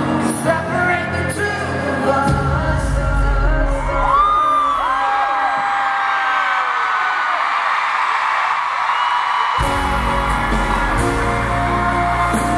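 Live pop band and vocals in an arena, recorded from the audience, with fans screaming. About four seconds in the bass drops out, leaving the voices and crowd, and the full band comes back in sharply near the ten-second mark.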